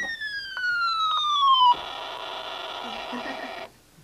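Electronic sound-effects toy playing a falling whistle that slides down for nearly two seconds, then a harsh buzzing noise burst of about two seconds that cuts off suddenly.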